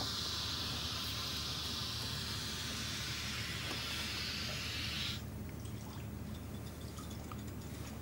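A steady rushing hiss that cuts off sharply about five seconds in, over a low steady hum.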